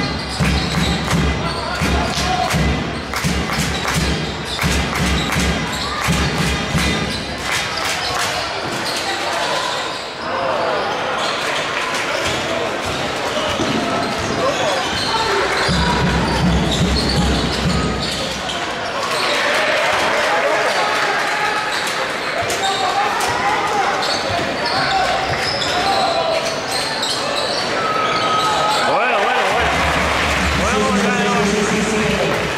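A basketball being dribbled on a hardwood court in a sports hall, with quick repeated bounces through the first several seconds. Voices call out in the hall throughout, becoming more prominent in the second half.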